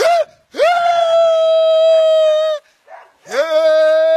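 A boy's voice holding two long, steady high notes in a sung wail. The first lasts about two seconds, and the second, lower one starts about three seconds in.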